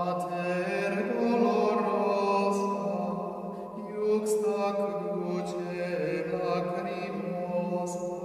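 Vocal chant: a voice holding long sustained notes that move slowly in pitch, fading out near the end.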